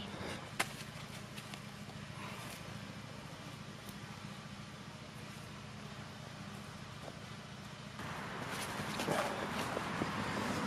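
Quiet outdoor background with a faint steady low hum and a single click about half a second in. From about eight seconds a louder rustling and handling noise builds as someone comes right up to the camera.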